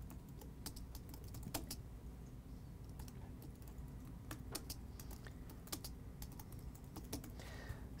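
Faint typing on a computer keyboard: irregular single keystrokes and short quick runs of keys.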